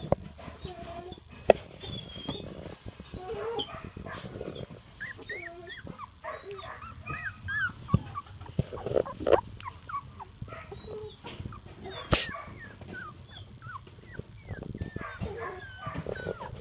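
A litter of two-and-a-half-week-old puppies whimpering and squeaking, many short high-pitched squeals overlapping one another. A few sharp knocks come in between as they crawl about.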